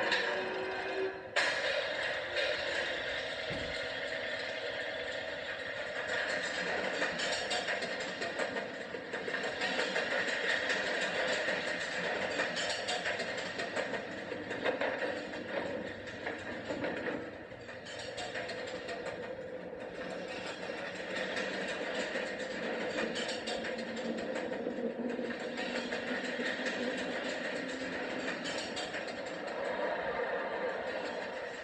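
Animated film soundtrack played from a TV speaker: a steady mechanical rumble and clatter of a ride along rails, mixed with music, dipping briefly past the middle.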